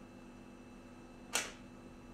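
Quiet room tone with a steady low hum and a single short, sharp click a little past halfway.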